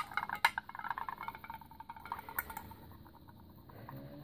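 Acrylic paint being stirred with a stick in a small metal tin, the stick scraping and clinking against the tin's sides with a few sharp taps. The stirring fades away about halfway through.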